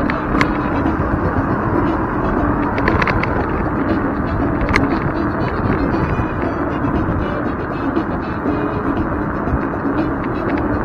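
Steady road rumble and wind noise from an electric scooter riding over asphalt, with a few sharp clicks in the first five seconds as it rattles over bumps.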